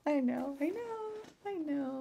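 A woman's helpless laughter coming out as two long, drawn-out cries, the first holding then rising in pitch, the second falling.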